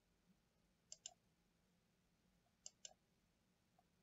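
Computer mouse button clicks against near silence: two quick pairs of short clicks, about a second in and again near three seconds.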